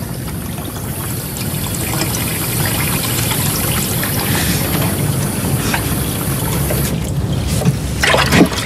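Water running steadily from a tap into a bathroom washbasin.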